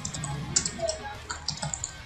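Typing on a computer keyboard: quick, irregular runs of key clicks as text is entered.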